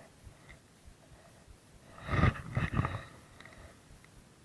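A short, loud non-speech vocal noise from a person about two seconds in, lasting about a second in a few pulses.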